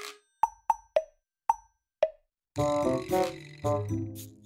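Background music: five short popping notes in the first two seconds with dead silence between them, then a fuller tune with chords and a beat starting about two and a half seconds in.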